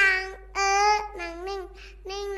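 A young child's high voice singing or chanting about four drawn-out syllables, the pitch bending within each.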